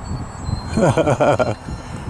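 A man laughing in a short burst about a second in, over low wind rumble on the microphone.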